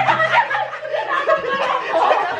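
A group of people laughing together, several voices at once.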